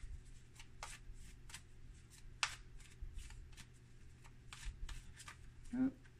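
An angel oracle card deck being shuffled and handled by hand: a run of light, irregular card clicks and snaps, one sharper snap about two and a half seconds in.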